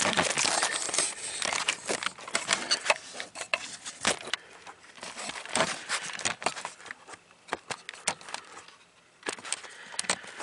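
Close handling noise: rustling and crackling with many sharp clicks as hands work the wiring connector of an evaporator temperature sensor under a car's dash. It thins out after about seven seconds, with a short flurry of clicks near the end.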